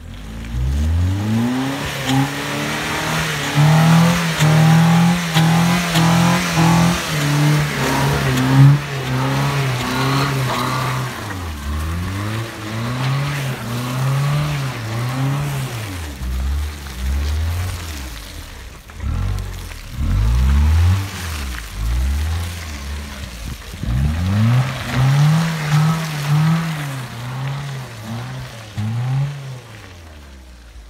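Mitsubishi Pajero iO's engine revving hard under load as it climbs a hill off-road, its pitch rising, holding and falling again many times as the driver works the throttle. It fades near the end as the vehicle drives away.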